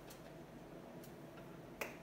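Whiteboard marker tip tapping on the board while a small mark is drawn: a few faint clicks, then one sharper click near the end, over quiet room noise.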